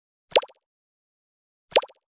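Two short pop sound effects, each a quick falling pitch, about a second and a half apart, as captions pop onto an animated end card.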